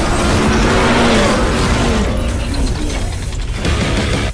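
Intro music mixed with a loud car engine sound effect, its pitch gliding up and down, easing off in the second half.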